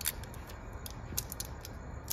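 Plastic wrapping seal being picked at and torn off the neck of a whiskey bottle: a few scattered sharp clicks and crinkles.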